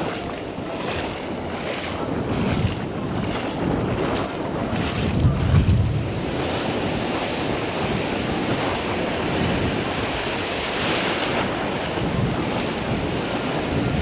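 Ocean surf breaking on the reef edge, with wind buffeting the microphone. For about the first five seconds there are short splashing steps, about two a second, from wading through shallow reef water.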